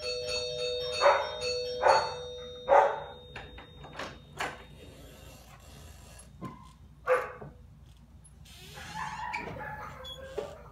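A doorbell chime rings and dies away over a few seconds, with three loud knocks on the front door during it. Scattered thuds and door sounds follow as the door is opened.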